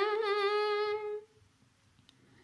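A female voice, unaccompanied, holds a long humming note at the end of a sung line of a Telugu patriotic song, with a slight waver. It fades out a little over a second in, leaving near silence.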